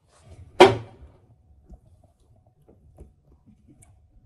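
A short hiss of leak-detection fluid sprayed from a spray bottle up into the outlet barrel of a gas meter control valve, about half a second in, followed by a few faint small clicks.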